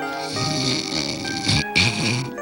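Snoring: one long snore, then a second beginning about one and a half seconds in, over background music with held notes.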